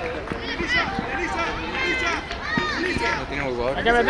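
Several voices calling and shouting over one another at a youth football match, with the calls growing louder near the end.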